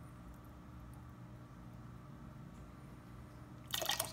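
A steady low hum, with a short splash near the end as a teaspoon of 3% hydrogen peroxide is tipped into a glass bowl of water.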